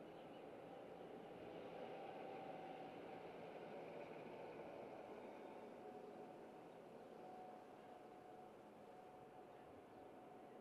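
Near silence: a faint, steady background hiss with a faint hum.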